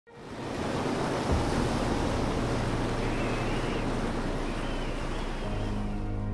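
Rushing, hissing sea water as a ship's bow cuts through the waves, fading in at the start and then steady, with a low droning note underneath.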